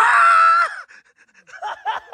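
A short, loud, high-pitched squeal lasting under a second, followed about a second and a half in by rapid bursts of laughter.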